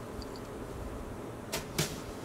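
Faint background hiss, then two brief scratchy swishes near the end: a watercolour brush stroking cold-press paper.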